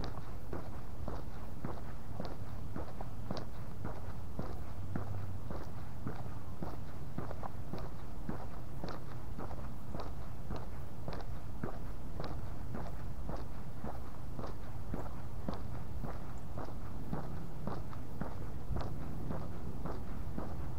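A person's footsteps on a concrete street at a steady walking pace, about two steps a second, over a constant low outdoor rumble.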